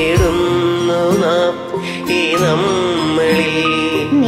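Music: a single voice sings a slow, ornamented melody that glides and wavers in pitch over steady accompanying notes, in an Indian devotional or classical style.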